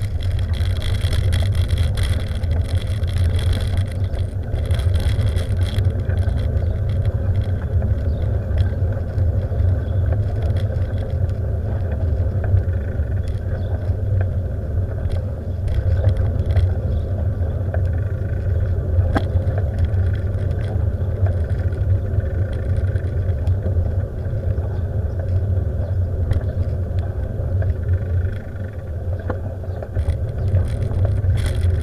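Steady low rumble of wind and road noise on the microphone of a camera moving along a road, with a few faint clicks and rattles.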